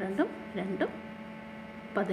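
A woman's voice speaking for about the first second, over a steady hum made of several faint, even tones.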